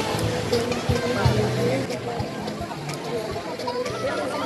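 Background music with people's voices talking and chattering over it.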